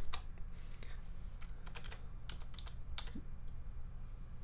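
Irregular light clicks of a computer keyboard and mouse in use, over a faint steady low hum.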